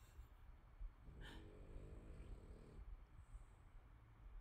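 A dog snoring faintly: one long snore starting about a second in and lasting a second and a half or so.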